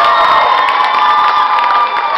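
Audience cheering and shouting, with high-pitched screams held over the noise of the crowd and scattered claps.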